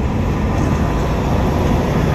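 Loud, steady rumble of traffic passing on the road, mostly deep, low noise with no distinct pitch.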